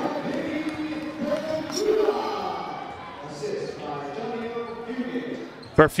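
Basketball dribbled on a hardwood gym floor, with a few sharp bounces standing out near the end, under the chatter of voices in the gym.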